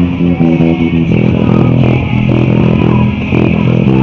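Handmade five-string electric bass guitar played through a small 30 W amplifier, a rock bass line of pitched notes changing every fraction of a second.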